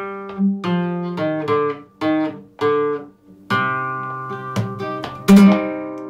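Flamenco guitar with a capo playing a bulería falseta in E (por arriba), the melody plucked with the thumb: a short run of single notes, then a struck chord about three and a half seconds in and a sharp strum-and-hit about five seconds in that is left ringing.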